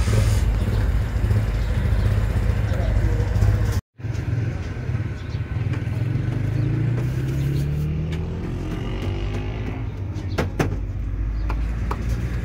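Road traffic close by: a steady low engine hum, with one vehicle's engine rising in pitch as it speeds up around the middle.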